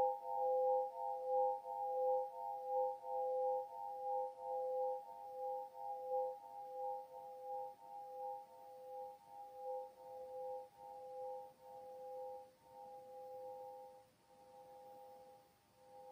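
Svaram Air nine-bar swinging chime ringing on after being struck: several sustained metal-tube tones pulse in regular waves as the bar frame swings, and fade away to near silence shortly before the end.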